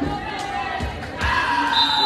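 Spectators talking in a gymnasium while a volleyball bounces a few times on the hardwood floor as a player readies to serve. A thin, steady high tone, likely a whistle, begins near the end.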